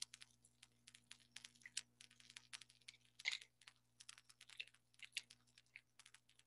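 Faint typing on a computer keyboard, with irregular key clicks several a second, over a low steady electrical hum, picked up through a call participant's open microphone.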